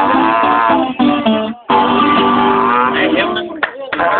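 A long curved horn blown with buzzing lips sounds two long, slightly wavering low notes, with a short break about one and a half seconds in. An acoustic guitar strums along underneath.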